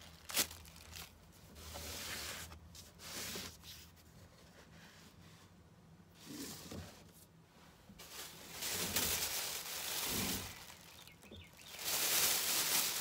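Thin plastic store bag rustling and crinkling as it is handled, loudest and longest over the last few seconds, with shorter, quieter rustles earlier.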